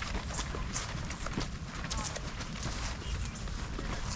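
Footsteps on a grass lawn, soft irregular thuds about two a second, over a low steady rumble.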